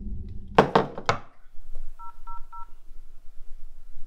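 Three quick thuds about half a second in, then three short, identical beeps of a mobile phone's keypad tones as the same key is pressed three times.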